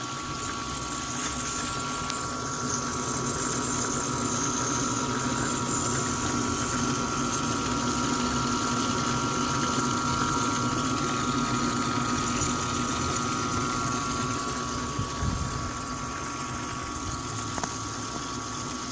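Submersible water pump running steadily with a constant hum, driving water jets that spray and splash up inside rows of upturned bottles in a sink.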